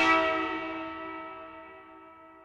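A struck bell ringing out, several tones sounding together and fading away steadily, the noisy wash of the strike dying right at the start.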